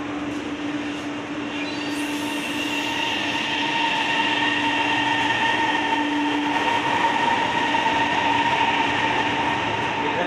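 CSR electric multiple unit pulling away from the platform: a steady whine of several held tones over rolling noise, growing slowly louder as the train gets moving.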